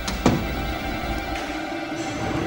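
A short, sudden swoosh sound effect, falling quickly in pitch about a quarter second in, over a low, steady background.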